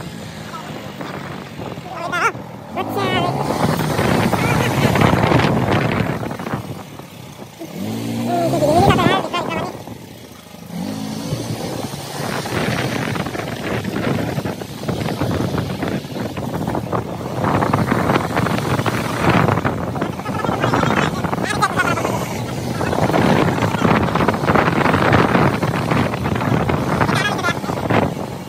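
Motorbike engine running under way, its pitch rising and falling with the throttle, most clearly about a third of the way in.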